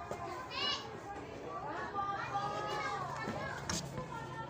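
Small children's voices chattering and calling out as they play, with a high squeal about half a second in and a short sharp sound near the end, over a steady low hum.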